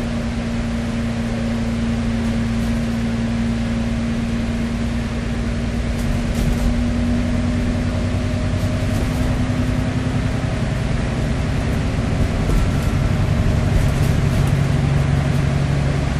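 Cummins diesel engine and Voith automatic gearbox of an Alexander Dennis Enviro400MMC double-decker bus heard from inside the lower deck while under way: a steady drone with a held tone that fades about ten seconds in as a lower tone takes over toward the end, with a few faint clicks and rattles.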